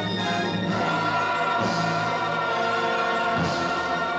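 Orchestral film-score music with a choir singing long held notes.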